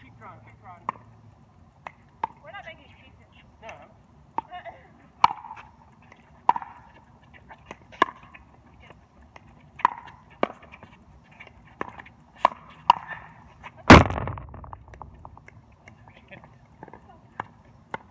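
Pickleball rally: paddles striking the hard plastic ball, a sharp pock roughly every second, some closer and louder than others. About fourteen seconds in comes one much louder impact close by, with a brief ringing tail.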